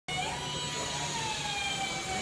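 Racing car engine running at high revs, its tone sliding slowly down in pitch as the car goes by, over a low steady hum.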